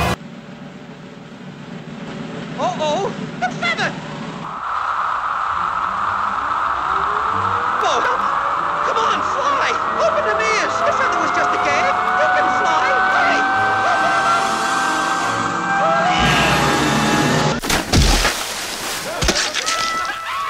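Edited cartoon soundtrack: voices and music, then a long rising whine over a noisy rush with cries through it, and a loud impact about eighteen seconds in.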